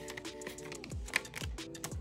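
Soft background music under quick, sharp clicks and rustles of paper cash and a paper envelope being handled as bills are slid into a binder envelope, with long fingernails tapping.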